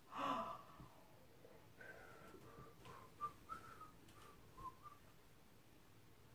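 Faint whistling by a person: a short run of wavering, separate notes from about two seconds in until about five seconds in, after a brief breath at the very start.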